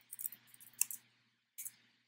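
Keystrokes on a computer keyboard: a few short, sharp clicks, the loudest about a second in and again near the end.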